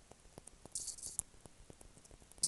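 Soft, faint clicks and taps from a small panda-shaped object handled close to the microphone, with a brief hiss near the middle.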